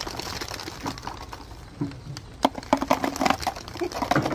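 Small plastic balls pouring and spilling, a quick run of light clicks as they drop and bounce on the floor, bunched in the second half.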